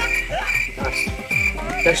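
Background music with a steady electronic beat: deep, falling bass kicks about twice a second and a short high chirping note that repeats with them.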